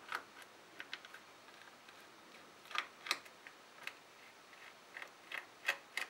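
Small screws being worked out of a plastic action-camera back with a small screwdriver: scattered light clicks and ticks at an uneven pace, a few louder ones about three seconds in and near the end.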